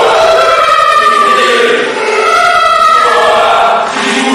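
A short spoken voice clip played as 256 overlapping copies at once, smearing into a loud, choir-like wail with no clear words. It comes in two runs of about two seconds each, with a brief dip between them.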